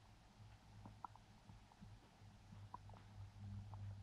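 Near silence: a faint, steady low rumble with scattered faint, short high chirps.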